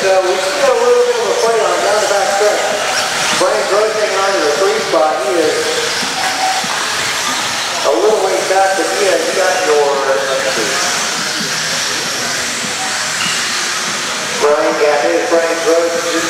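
A race announcer's voice over a loudspeaker in stretches, over a steady high hiss from electric RC buggies with 17.5-turn brushless motors racing on a dirt track.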